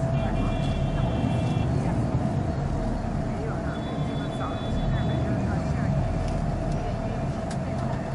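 Inside a moving tour bus: steady engine and road rumble with a constant hum, while a high-pitched vehicle horn outside sounds for over a second near the start and again around four seconds in.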